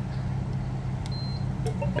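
A Linear call box gives one short, high beep about a second in as a key fob is held to its reader, the sign that the fob was read and access granted. A steady low hum runs underneath.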